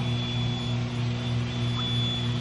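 Coleman SaluSpa inflatable hot tub's pump unit running, a low steady hum.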